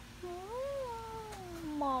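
A long, whiny drawn-out 'aww' in a child's put-on character voice. It rises and then slowly falls in pitch over about a second and a half, and runs straight into complaining speech near the end.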